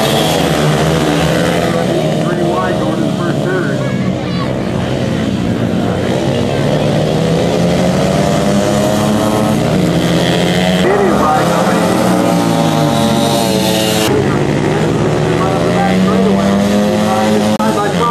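Several dirt bike engines racing, their pitch rising and falling as the riders rev and shift.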